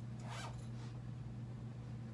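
A clothing zipper drawn once: a short rasp near the start, over a steady low hum.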